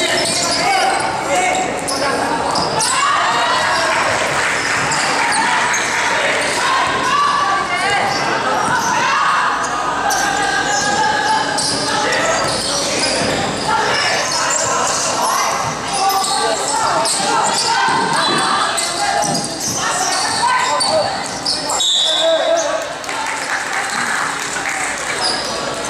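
Basketball game in a gymnasium: a ball bouncing on the court amid a constant hubbub of players' and spectators' voices, echoing in the large hall.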